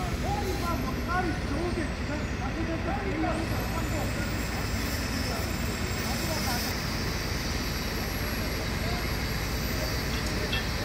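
Steady low rumble of a large mobile crane's engine running during a heavy lift, with distant voices over it.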